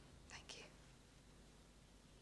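Near silence: quiet room tone, with one brief, faint breath about half a second in.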